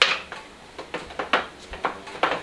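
A golok (machete) and its wooden sheath being handled: a sharp click at the start, then a few lighter knocks and clicks, one of them louder a little past the middle.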